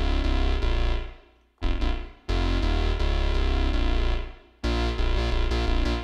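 Akai JURA software synthesizer playing its 'Squiggle' preset with chorus on. Held synth notes fade out about a second in and again around four seconds, each time starting up again. A quicker run of notes begins near the end.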